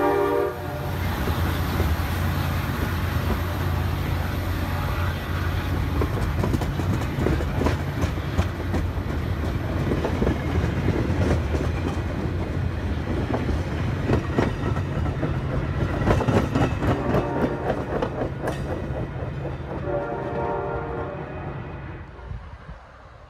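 Metra commuter train of bilevel gallery cars rolling past: wheels clicking over rail joints over a steady low drone, fading as the train pulls away. A train horn chord cuts off about half a second in and sounds again, fainter, near the end.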